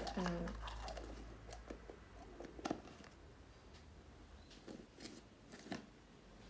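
Faint, scattered clicks and taps of a plastic cosmetic jar and its screw lid being handled, a few at irregular intervals.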